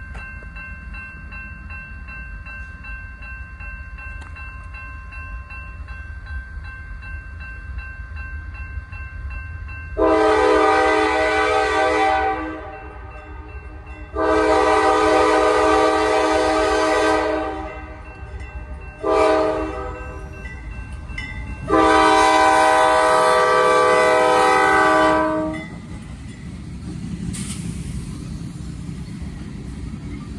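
A railroad crossing bell rings steadily. About a third of the way in, a CSX freight locomotive's air horn sounds the grade-crossing signal: long, long, short, long. Near the end comes the low rumble of the train rolling through the crossing.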